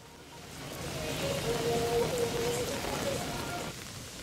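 Heavy rain pouring down on open water, a dense steady hiss that builds over the first second. A faint steady tone runs through the middle of it.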